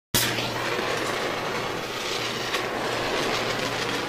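Logo-reveal sound effect of rushing, crackling fire and sparks, starting abruptly, with a sharp crack about two and a half seconds in.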